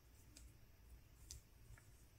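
Near silence with three faint, short clicks from the metal crochet hook and hands working cotton yarn, the middle one the loudest.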